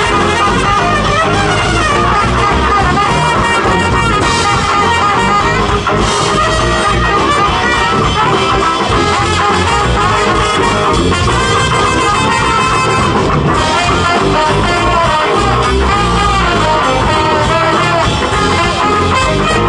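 Live band playing at a steady, loud level: brass horns and saxophone over electric guitar and drum kit, with a sousaphone on the bass line.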